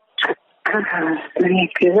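Speech over a telephone line on a recorded phone call: a voice with the thin sound of a phone connection, starting after a brief pause.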